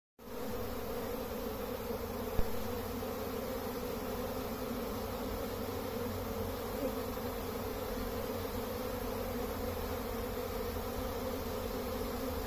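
Steady, dense hum of a mass of honeybees flying in front of their hive entrances, the sound of a busy, populous colony in full flight. A single brief click about two and a half seconds in.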